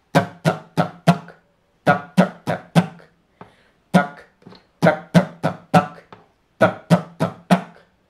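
Cutaway acoustic guitar strummed in groups of about four quick alternating strokes, each group followed by a short silent pause. This is a down-up strumming pattern, D - UDUD - UDUD, played with deliberate gaps between the groups.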